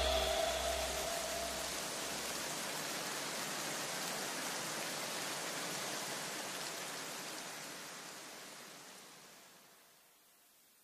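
A soft wash of hiss, the fading tail of electronic background music, slowly dying away to silence about nine seconds in.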